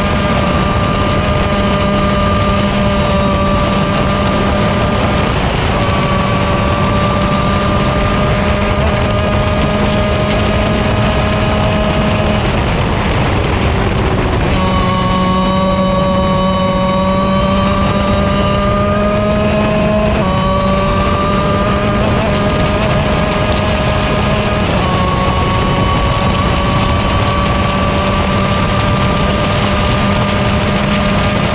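125cc two-stroke KZ shifter kart engine at full throttle, heard onboard. Its pitch climbs slowly and drops at each gear change, with a lift and dip in pitch about halfway through. A steady rush of wind runs underneath.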